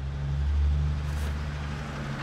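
A steady low hum with a faint hiss above it, swelling about half a second in and easing slightly after.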